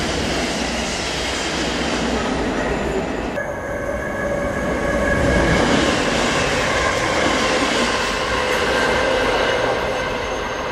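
Electric multiple-unit passenger train passing through a station at speed: a loud rushing rumble with a steady whine, swelling to its loudest about halfway through. The sound changes abruptly just over three seconds in.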